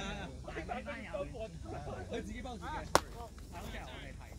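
People talking and calling out across a baseball field, with one sharp crack about three seconds in as a pitched baseball arrives at home plate.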